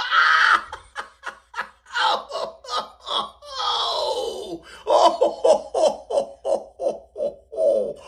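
A person laughing hard in a long run of short, quick bursts, with one longer, drawn-out laugh about four seconds in.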